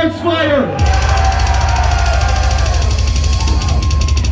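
Live technical death metal band: a held, distorted chord with vocals, then from about a second in, very fast drumming with steady bass drum and cymbals under a sustained low guitar note.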